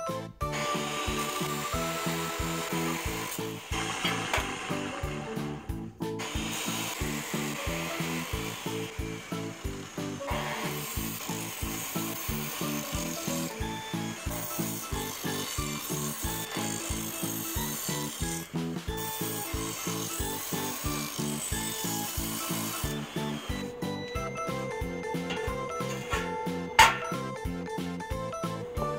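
Metal chop saw cutting square steel tubing, a continuous grinding hiss with brief breaks about 6 and 18 seconds in, stopping about 23 seconds in, under background music with a steady beat. A single sharp click sounds near the end.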